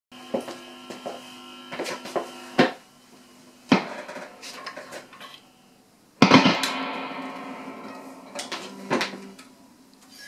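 Electric guitar being handled and plugged into a live amplifier: several sharp knocks with open strings ringing, then a loud sudden burst about six seconds in as the cable jack goes in, the strings ringing out and fading over a couple of seconds, and a few more knocks near the end.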